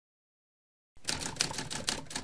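Typewriter typing sound effect: rapid keystroke clicks starting about a second in, following the title text as it appears letter by letter.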